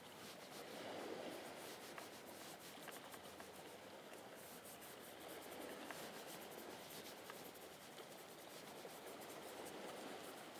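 Faint scratching and rubbing of a paintbrush dragging paint across a white painting panel, over a low, steady background hiss.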